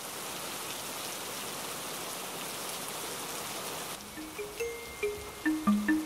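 Steady rain falling on paving, an even hiss. About four seconds in, gentle background music of short, bell-like mallet notes begins.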